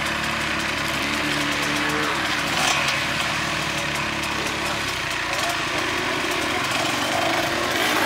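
Enduro dirt bike engines running steadily at idle, with a slight change in pitch about a second in.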